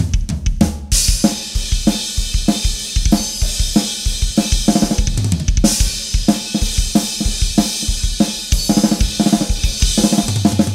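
Acoustic drum kit played in a steady groove of kick, snare and hi-hat, each drum close-miked. A few sparse hits give way to cymbals washing in about a second in, with a brighter cymbal crash near the middle.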